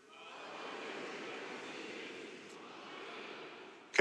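A large congregation speaking a response together. The many voices blur into one indistinct wash rather than a crisp unison; it swells up just after the start and fades out near the end. The response is loose, not the set words said together, and the preacher asks for it again.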